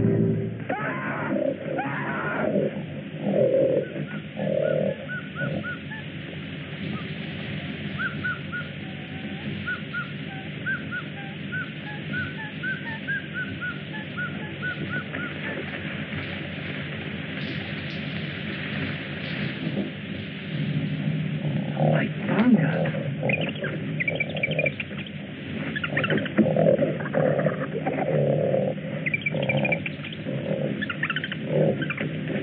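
Film jungle ambience: a mix of wild animal calls and bird chatter, with a run of quick repeated chirps in the middle and louder, denser animal calls from about two thirds of the way in.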